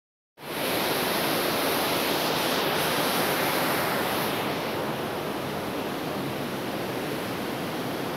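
Large mountain waterfall, the Cündüre Waterfall, pouring heavily over rock ledges: a steady rush of falling water heard close to its base. It starts a moment in and eases slightly a little past halfway.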